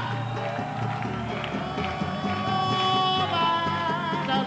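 Live salsa band playing: congas and other Latin percussion keep the rhythm under a long held note from about one second in, just after the singer's line ends.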